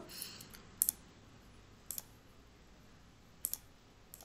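Computer mouse clicking three times, each click a quick double tick, over quiet room tone.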